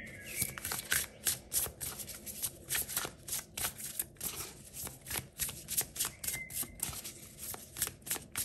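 A tarot deck being shuffled by hand: a steady run of quick card flicks, about three or four a second.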